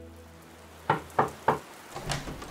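Three sharp knocks on a door, about a third of a second apart, as a music bed fades out.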